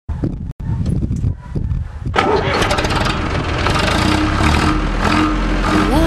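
Zetor 5211 tractor's diesel engine starting: about two seconds of uneven low chugging, then it catches and runs loudly and steadily.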